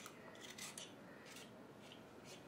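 Faint scraping strokes of a hand-held vegetable peeler shaving the skin off a raw carrot, a few short strokes at an uneven pace.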